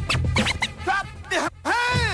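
Late-1980s hip-hop track with a DJ scratching a record on a turntable over a heavy bass beat. The scratches sweep up and down in pitch several times, with a brief drop-out about one and a half seconds in.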